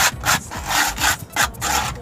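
Sandpaper rubbed back and forth over the rim of a cement flower pot, smoothing the rough edge. It comes as about five scratchy strokes, some short and some longer.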